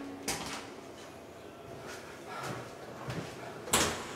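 A few scattered knocks and rattles, then a louder bang near the end, as a person leaves a small karaoke booth and handles its door.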